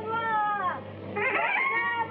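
A person's voice drawn out in long held notes, sliding down in pitch near the middle before a new drawn-out phrase begins, over a steady low hum.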